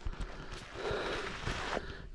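Footsteps pushing and slipping up a steep slope of soft, loose sand, with the walker's breathing as he climbs.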